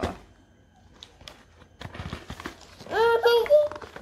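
A young child's high-pitched voice calls out briefly about three seconds in, over light tapping and scraping of a cardboard shoe box being opened by hand.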